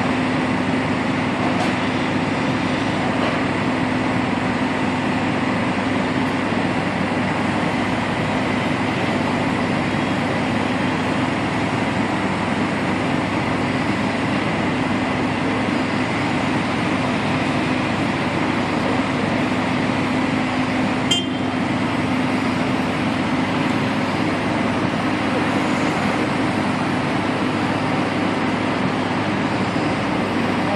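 Mobile crane's diesel engine running steadily under load with a constant low drone while it holds and swings a suspended load. A single short click about 21 seconds in.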